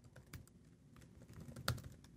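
Faint typing on a computer keyboard: a string of light key clicks, with one louder click about three-quarters of the way through.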